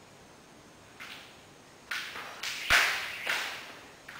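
Jump rope swishing and slapping against the gym's rubber mat about five times at uneven spacing, the loudest slap, with a dull thud, a little before three seconds in.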